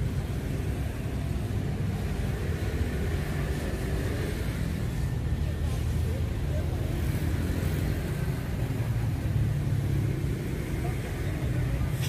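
Steady low rumble of road traffic in outdoor ambience, with no distinct events.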